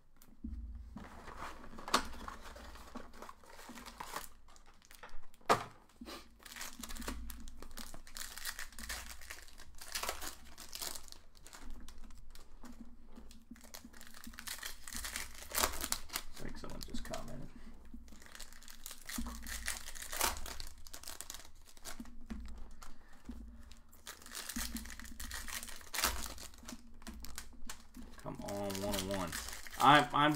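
Baseball card pack wrappers being torn open and crinkled, an irregular run of crackles and rips with a few sharper snaps.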